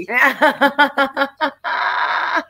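Women laughing hard: a run of quick pitched bursts, about five a second, starting high, then a long breathy wheeze about a second and a half in.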